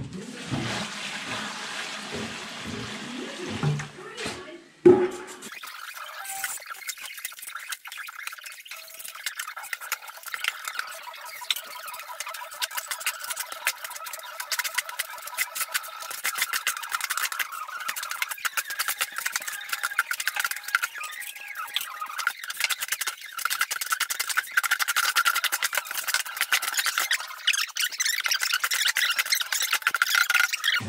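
Wet mortar being mixed in a wheelbarrow: a continuous gritty, crackling scrape over a steady higher hum, setting in after a sharp knock about five seconds in.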